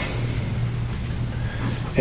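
Room tone: a steady low hum with an even hiss.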